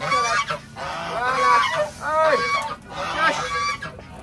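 Domestic geese honking: a rapid, overlapping run of short calls from several birds.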